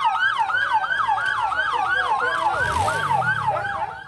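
Electronic vehicle siren on a fast yelp setting, sweeping up and down about three times a second. A low rumble swells briefly in the middle.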